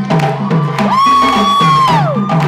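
Drum circle of djembes and stick-played dunun drums playing a steady rhythm. A long high call glides up about a second in, holds, and falls away near the end.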